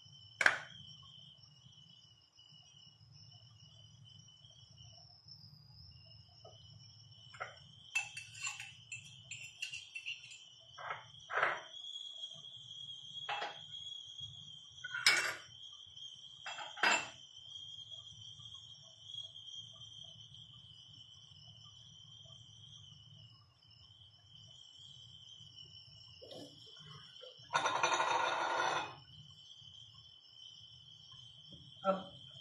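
Scattered sharp clicks and knocks of kitchen utensils, most of them in the middle, over a faint steady high-pitched trill, with a short loud rush of noise near the end.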